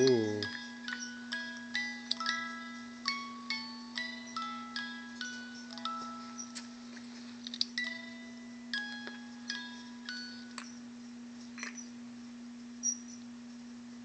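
Wind-up music box inside a plush sheep toy playing a tinkling tune, its notes coming more and more slowly until they stop about ten seconds in as the spring runs down. A steady low hum runs underneath.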